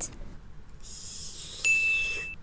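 A faint hiss, then, about one and a half seconds in, a single steady electronic beep: one clean high tone that starts and stops sharply and lasts well under a second.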